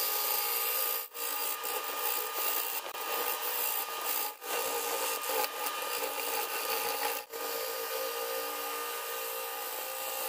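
A bowl gouge cutting a wet spalted red oak bowl blank spinning on a wood lathe, a continuous scraping cut over the steady tones of the running lathe. The cut breaks off briefly three times: about a second in, near the middle and about seven seconds in.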